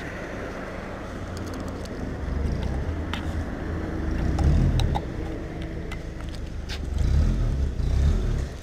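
Engine of a tuned VW Gol running at low speed as the car rolls up close, a deep, steady rumble that swells in loudness a few times.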